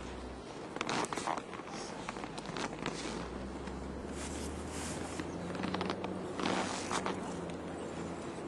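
Skis scraping and swishing over snow as a mogul skier turns down the run, in irregular bursts with a low rumble beneath.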